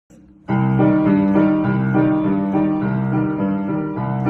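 Keyboard music with a piano-like sound starts suddenly about half a second in and plays held chords with a melody moving over them.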